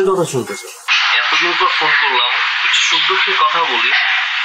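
A man's voice briefly, then from about a second in a voice heard through a telephone line: thin and tinny, cut off at the low and high ends, over a steady line hiss.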